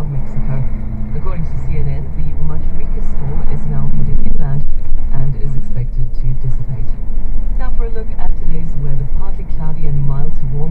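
Inside a truck cab: a steady low engine drone under a muffled man's voice talking on the cab radio, the words not clear.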